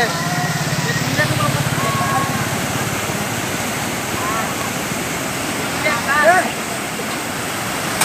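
Muddy floodwater rushing steadily through the broken arches of a collapsed small road bridge, with people's voices calling out over it, loudest about six seconds in. A low buzz runs under the water for the first three seconds.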